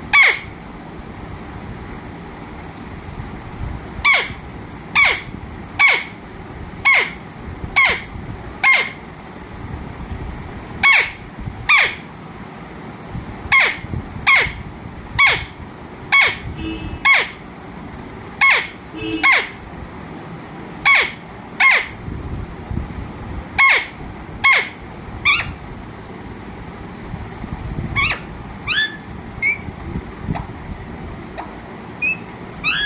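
Alexandrine parakeet screeching: loud, short calls, each falling in pitch, repeated about once a second in runs of two to six. A few quicker, quieter chirps come near the end.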